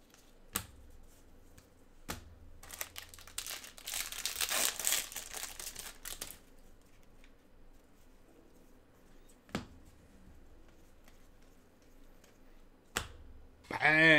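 Gloved hands working through a stack of trading cards: a few sharp taps and flicks as cards are shuffled, and a louder crinkly rustle from about three to six seconds in.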